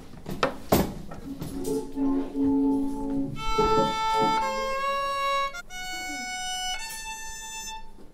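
Violins bowing a short progression of sustained notes: a few low notes first, then, from about halfway through, a run of higher, clear held notes, sometimes two sounding together. A single knock comes about a second in.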